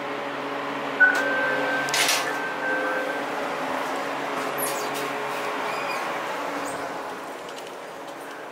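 Building entrance intercom: a click about a second in, then a thin steady buzz-tone of about two seconds, typical of a door-release signal, with the glass entrance door opening just after, over a steady low hum.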